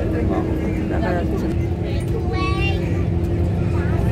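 Steady road rumble and engine hum inside a moving vehicle, with voices talking over it.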